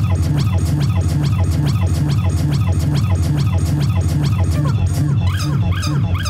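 Electronic music: a fast, evenly repeating pattern of short falling chirps over a pulsing bass, with higher chirps coming to the fore about five seconds in.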